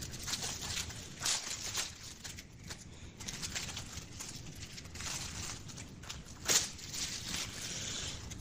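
Crumpled plastic shrink-wrap crinkling and rustling as it is handled, in irregular crackles, the loudest about six and a half seconds in.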